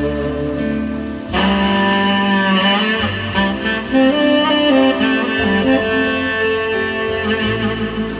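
Saxophone playing a slow melody over accompaniment music with a bass line. The saxophone breaks off for a short breath about a second in, then picks the phrase up again.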